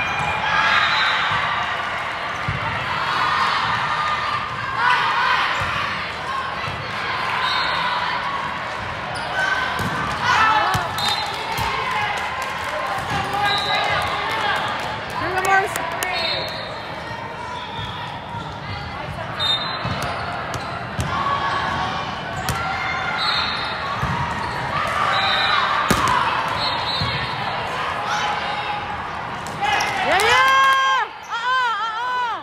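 Indoor volleyball play in a large, echoing hall: the ball struck several times, sharp and separate, amid the voices of players and spectators.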